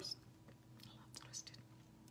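Near silence with a few faint soft clicks and rustles as a mascara tube is twisted open and the wand is drawn out, over a faint steady room hum.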